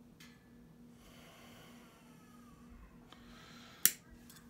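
Faint breathing and handling noise, then a single sharp metallic snip near the end as hand snips cut through a punched metal shim ring.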